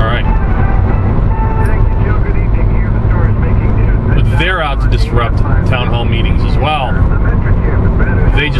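Steady low road and engine rumble inside the cabin of a car moving at highway speed, with a man's voice heard briefly about halfway through and again near the end.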